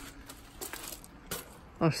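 Mostly quiet, with a few faint, light clicks and clinks; a man's voice starts at the very end.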